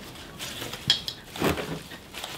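Potting soil being handled in pots: faint scraping with two light clinks, about one second and one and a half seconds in.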